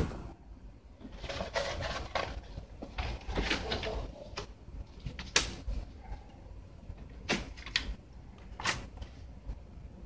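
Close handling noises: rustling and scraping for a couple of seconds, then a few separate sharp clicks and knocks spaced a second or two apart.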